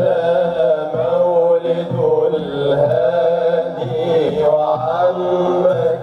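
Men's voices chanting a madih, an Arabic devotional praise song for the Prophet, in long, wavering held notes over a musical accompaniment.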